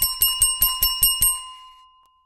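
A small bell rings as a notification sound effect, struck rapidly about eight times, some five strikes a second. Its bright ringing tone then fades out over the last half-second.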